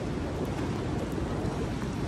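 Steady rushing outdoor noise with a low rumble, wind on a phone microphone and light rain, with a few faint clicks.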